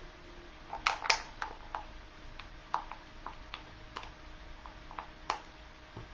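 Irregular light clicks and taps from a craft stirring stick being picked up and handled, two sharper ones about a second in followed by fainter scattered taps.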